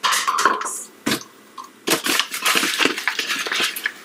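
Paper flour bag crinkling and rustling as a measuring cup is dug into it to scoop flour, in two bouts: about a second at the start, then a longer stretch from about two seconds in.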